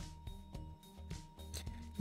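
Faint background music, with a few soft rasping strokes of 120-grit wet-and-dry sandpaper rubbed by hand over a thin PVC cut-out.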